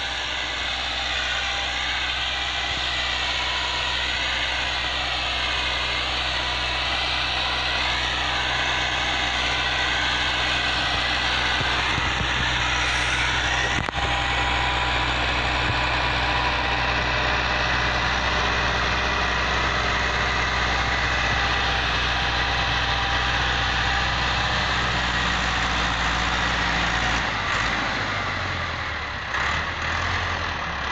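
Farm tractor's diesel engine running steadily under load as it pulls a harrow through ploughed soil, with the engine note shifting near the end.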